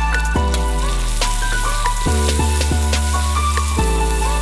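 Garlic and shallots frying in hot oil in a wok, a steady sizzle, under background music whose sustained notes change every couple of seconds.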